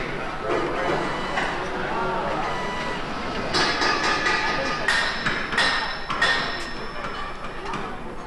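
Workshop noise on an engine assembly line: indistinct voices in the first few seconds, then four sharp ringing knocks in the second half, like tools or parts striking metal.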